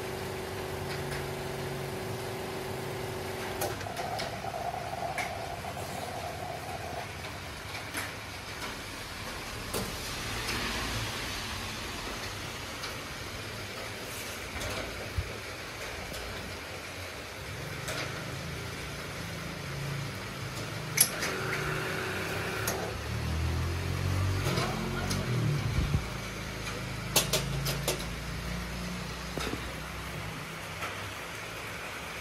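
Espresso machine pump running with a steady hum while the shot pours, cutting off about four seconds in. After that come scattered clicks and knocks as the portafilter is handled, over a low background hum.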